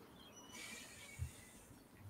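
Mostly near silence, with a faint, brief rustle of paper about half a second in as comic art prints and a paperback are handled on a desk.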